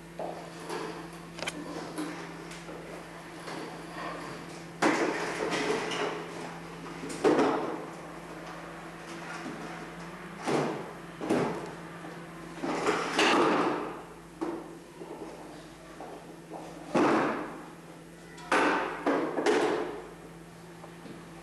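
A red plastic toy wheelbarrow scraping, rattling and knocking on a hard floor as a small child pushes it and tips it up, in a series of irregular bursts with a steady low hum underneath.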